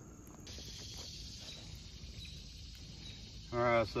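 Faint outdoor background noise with no clear event. A man's voice starts near the end.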